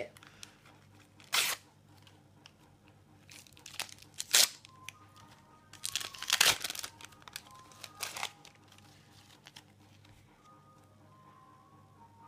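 A Panini sticker packet being torn open and its wrapper crinkled, in several short sharp tearing bursts about a second and a half, four, six and eight seconds in, the one around six seconds the longest. After that it goes quieter as the stickers are pulled out.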